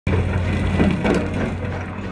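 Rocks crunching and grinding under an excavator bucket, over a steady low hum.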